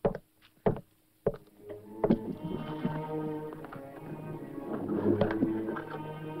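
Three heavy, evenly paced boot footsteps on a wooden floor, then orchestral western film-score music entering about two seconds in with held chords that build.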